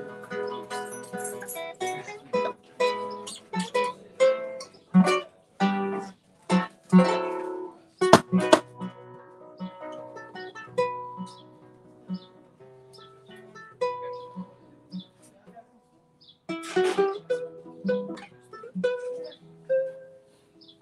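Solo classical guitar played in a flamenco/classical style: fingerpicked melody notes broken by bursts of fast, loud strummed chords, once near the middle and again near the end, with a quieter passage of single notes between them.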